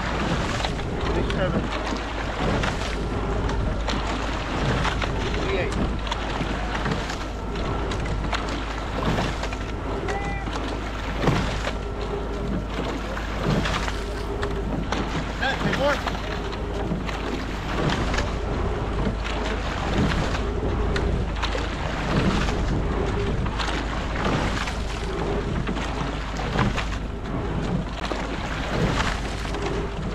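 Quad scull under way at a steady stroke rate: the sound of the oars catching and driving through the water repeats about every two seconds, over steady wind noise on the microphone.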